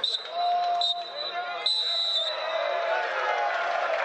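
Football stadium crowd shouting and chanting, with a high whistle sounding in three short blasts, the last and longest about halfway through.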